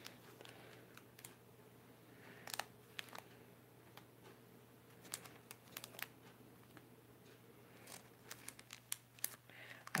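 Faint, scattered crinkling of Pokémon booster pack wrappers as the packs are picked up and shuffled by hand, in short rustles a few times over.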